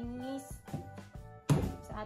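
Yeasted bread dough slapped down hard onto a wooden table once, about one and a half seconds in, as it is beaten during kneading to make it smooth. Background music plays throughout.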